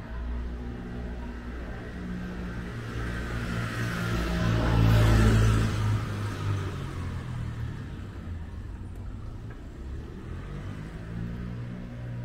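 A car passing close by on a narrow street: engine and tyre noise swell to a peak about five seconds in and then fade away, over a steady low hum.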